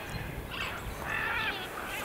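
Quiet outdoor background with a bird calling a few times, short calls about half a second in and again a second later.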